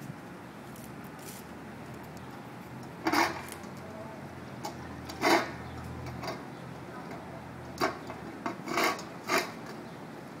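A dog nosing and pawing a tennis ball around in a metal water bowl: several short splashing, knocking and scraping sounds, bunched more closely near the end. A steady low background noise runs underneath.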